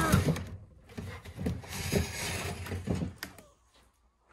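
Several dull knocks and thuds as a beehive box is pulled down from a stack and handled, spread over the first three seconds and then dying away.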